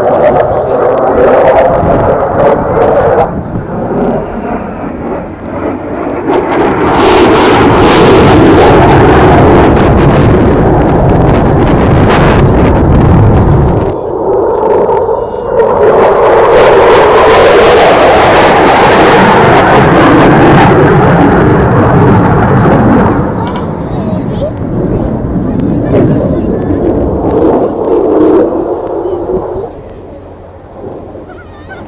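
An F-16 fighter jet's engine during a display pass: loud jet noise that swells about a quarter of the way in, dips briefly midway, stays loud, then fades near the end.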